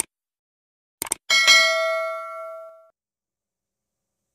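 Sound effect of a subscribe-button animation: a mouse click, then a quick double click about a second in, followed by a single bright notification-bell ding that rings out and fades over about a second and a half.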